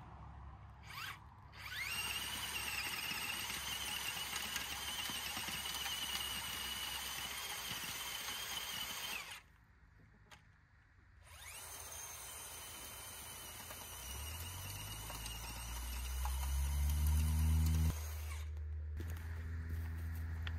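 Cordless drill driving a Power Planter auger into watered soil to bore planting holes, running with a high motor whine. It runs in two long bursts with a pause of about two seconds near the middle. In the second burst a deeper drone rises in pitch and grows louder.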